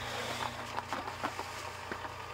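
Electric cement mixer running with damp sand in the drum for a semi-dry floor screed: a steady low motor hum with scattered light ticks of the mix tumbling.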